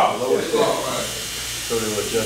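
People talking, with a quieter gap in the middle.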